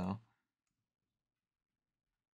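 A man's voice trails off on a last word, then near silence for the rest, with no more than a couple of very faint clicks.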